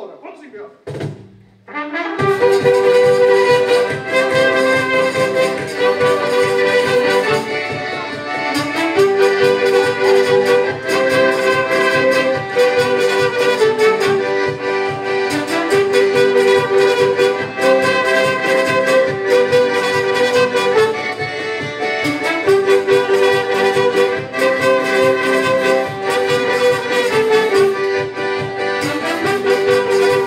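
Live band music from about two seconds in: strummed acoustic guitars under a saxophone and brass carrying the melody.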